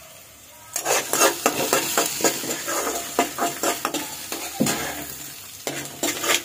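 Chopped red onions frying in an aluminium kadai, sizzling and stirred with repeated scrapes against the pan. The frying starts about a second in and grows quieter toward the end.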